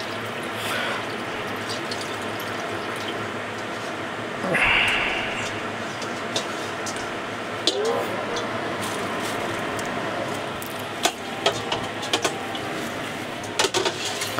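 Soaking water being poured off and running into a stainless steel kitchen sink: a steady running and splashing, with a louder gush about four and a half seconds in and a few light metal clinks in the second half.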